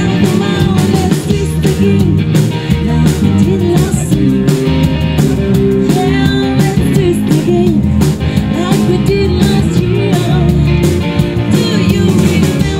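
Live country rock band playing a twist number: a woman's lead vocal over electric and acoustic guitars, electric bass and a drum kit keeping a steady beat.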